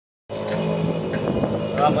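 Background music with sustained notes starts suddenly just after the beginning, and a voice comes in near the end.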